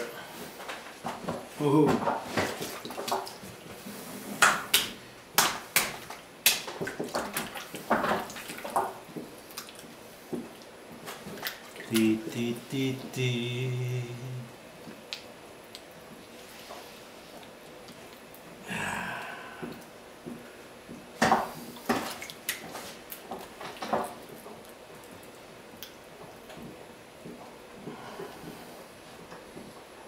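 Wet clay being centred and coned up by hand on a spinning potter's wheel: irregular squelches, slaps and splashes of water-slicked hands working the clay.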